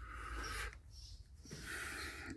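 A man's soft breathing close to the microphone: a breath out, then a breath in near the end, over a faint low hum.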